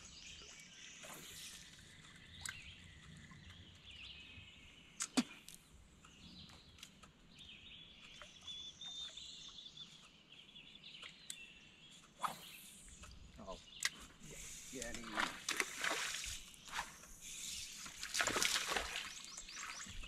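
Faint bird chirping, with a few sharp clicks or knocks and a louder rush of noise in the last few seconds.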